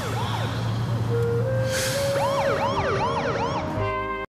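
Emergency-vehicle siren wailing in quick rising-and-falling sweeps, with music coming in over it from about a second in and taking over near the end.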